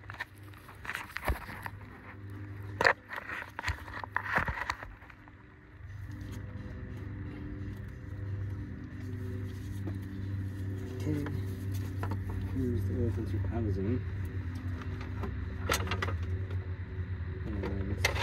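Tools and metal parts clicking and knocking during engine work for the first five seconds or so, then a steady low hum.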